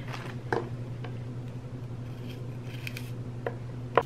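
Celery stalks being handled and trimmed with a small knife on a wooden cutting board: a few faint clicks and snaps over a steady low hum.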